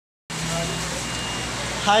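Steady background hum and hiss with a few faint constant tones, starting just after a moment of silence; a man's voice says "hi" near the end.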